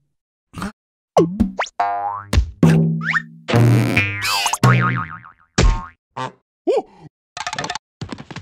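Cartoon sound effects for a rubber balloon bouncing on and off the larvae: a quick run of springy boings, thumps and sliding squeals, each short with brief gaps between, with music mixed in.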